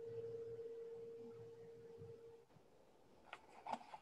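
A faint, steady pure tone that slowly fades away about two and a half seconds in, followed by near silence.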